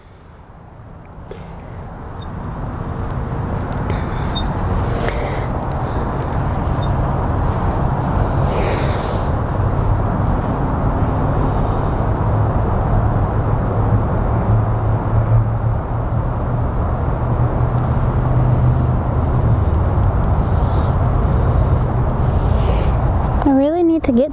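Steady low rumble of a running engine or machine, building over the first few seconds and then holding steady, with a few faint clicks.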